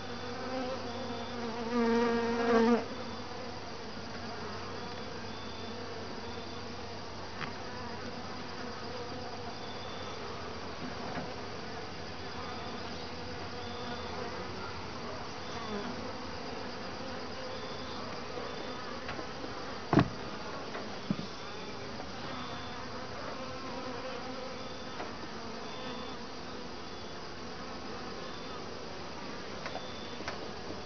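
Honeybees buzzing steadily around an open top-bar hive, with one bee passing close by about two seconds in as a louder, lower buzz. A sharp knock about two-thirds of the way through, and a smaller one a second later, as the wooden top bars are pushed together.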